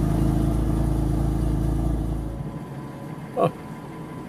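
BMW M4's twin-turbo straight-six running just after start-up, heard from inside the cabin; its steady, loud running note drops away about two and a half seconds in.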